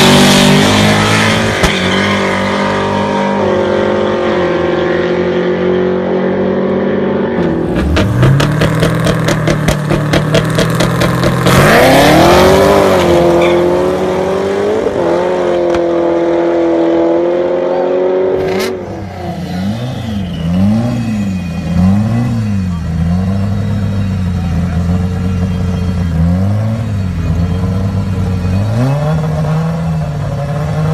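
Two Camaro street-race cars hold their engines at steady revs at the start line, then launch hard about eight seconds in and accelerate away, the engine pitch climbing and dropping back with each gear shift. After a sudden cut a little past the middle, another race car's engine is revved up and down repeatedly while it waits at the line.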